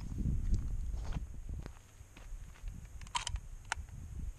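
Footsteps crunching on loose gravel, with rough handling noise from a camera being carried. A quick cluster of sharp clicks comes about three seconds in, followed by one more click.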